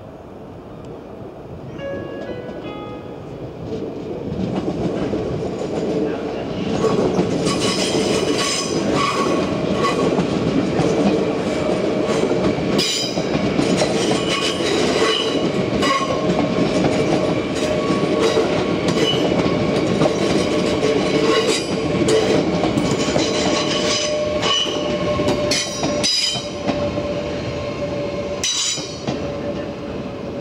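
NS double-deck electric passenger train approaching and passing close by, growing louder over the first several seconds, then a sustained run of wheel clatter: many sharp clicks over rail joints and points on top of a dense rumble, with a steady whine held throughout the pass.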